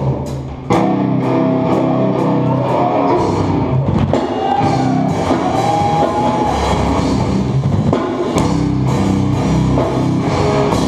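Live hardcore band playing loud, with distorted guitars, bass and drums. The band cuts out for a split second near the start, then crashes back in at full volume.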